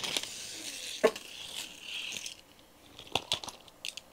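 Belial 3 Beyblade Burst top spinning on a foam mat, a steady whirring hiss that dies away a little over two seconds in. Near the end come several sharp plastic clicks as the top is picked up and its burst stopper is pressed shut.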